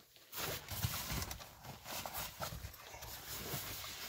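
Fabric storage bags rustling and shifting as they are handled on a seat-back organizer wall, with a few light knocks.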